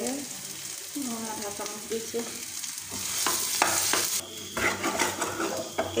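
Mashed potato and fried onion sizzling in a frying pan while a plastic spoon stirs and scrapes through it. About halfway in, the scraping gets busier and the hiss briefly louder.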